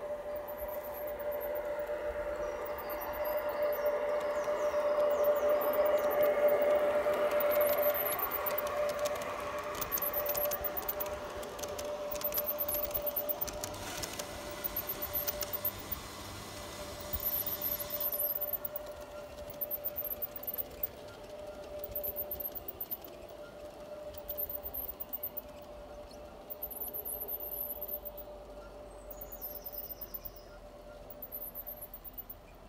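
Garden-railway model electric train running past on its track: a steady motor whine that grows louder as it comes close, peaking about six seconds in, then fades away, with a run of rapid clicking from the wheels over the rails in the middle.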